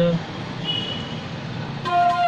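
A short lull with a low background rumble and a brief faint high tone about two-thirds of a second in. Then a bansuri, a bamboo transverse flute, comes in just before the end with a steady held note.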